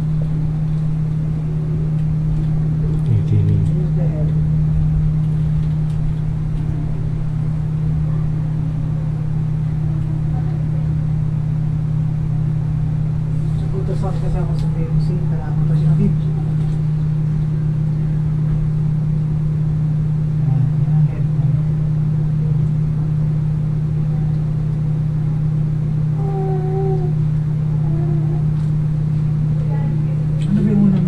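A steady low mechanical hum, with faint voices now and then.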